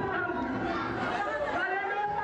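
A woman's voice amplified through a microphone, with crowd chatter around it.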